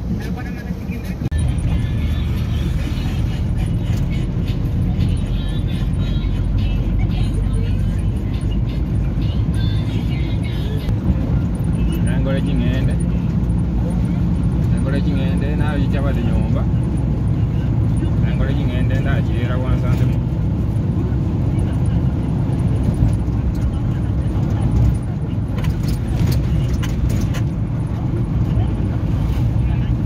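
Steady low rumble of engine and tyres from inside a vehicle moving along a highway, with indistinct voices and music in the background.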